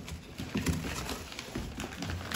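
Dogs scuffling on a laminate floor, claws clicking in an irregular patter, with cardboard and paper rustling as they tear at a box.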